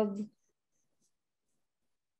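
A woman's voice trailing off on a drawn-out word just as it begins, then near silence.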